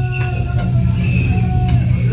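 Ceremonial song for a Hopi deer dance: a low, steady chant held on one pitch, with higher gliding tones rising and falling above it.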